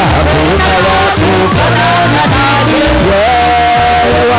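Loud live gospel worship music: a man singing a melody into a microphone over amplified instrumental backing with a steady bass. Near the end he holds one long note.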